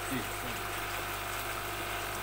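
Muddy waste water running steadily from the drain tap of an aquaponics biofilter tank into a plastic bucket, flushing out accumulated fish waste.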